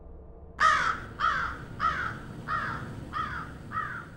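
A bird calling six times in a row, a little under two calls a second, each call dropping in pitch and the series growing fainter toward the end.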